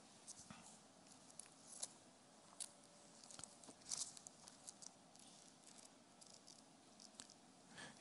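Faint rustling of thin Bible pages being leafed through by hand, in scattered soft flicks.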